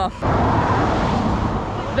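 A car passing close by on the street: steady tyre and road noise that sets in suddenly just after the start.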